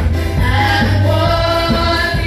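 A church praise team singing a gospel praise song into microphones, with instrumental backing: a steady bass and a regular drumbeat.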